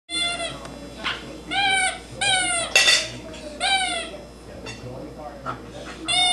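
A Shetland sheepdog chewing on a rubber squeaky toy, squeezing out a series of high squeaks of about half a second each. There are four strong squeaks in the first four seconds and a short sharp noise near the three-second mark, then a few fainter squeaks.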